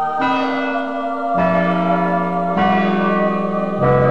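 Church bells ringing: four strikes about a second and a quarter apart, each at a different pitch, every bell ringing on under the next.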